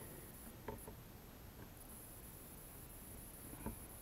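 Near-quiet room tone with a faint steady high hiss and a few faint clicks, two about a second in and one near the end, from an analog oscilloscope's front-panel knobs and switches being worked by hand.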